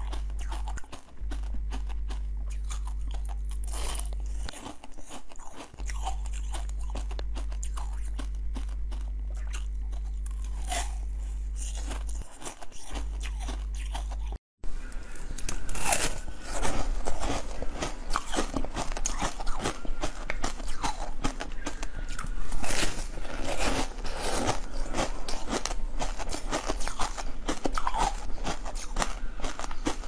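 Close-miked biting and chewing of jelly sweets. The first half is soft chewing over a steady low hum. After a break about halfway, louder, denser crunchy bites and chewing follow.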